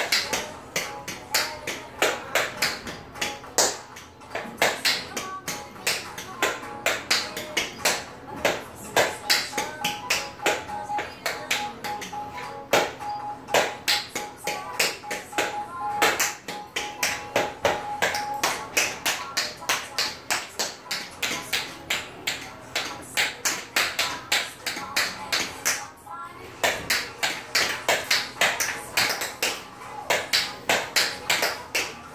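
Tap shoes striking a tile floor in quick, rhythmic strings of taps during a tap dance, over recorded pop music. The taps pause briefly a little before the end.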